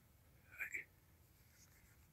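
Near silence: room tone, broken about half a second in by one brief faint sound.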